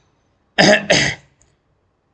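A man coughs twice in quick succession, two short harsh coughs about half a second apart.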